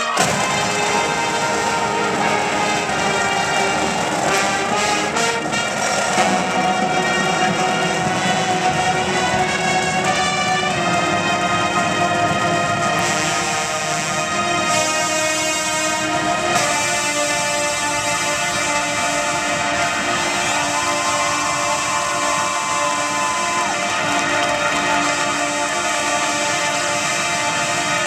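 A 350-member university marching band playing: massed brass holding full sustained chords over the drumline, with the harmony shifting to new chords several times.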